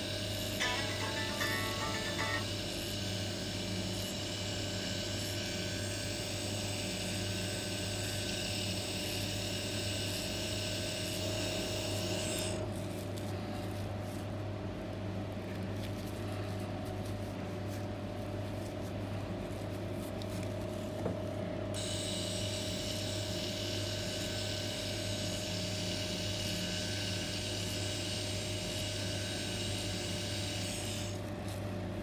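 A permanent-makeup machine pen running with a steady electric hum and high whine. The high whine drops away for about ten seconds in the middle, then comes back.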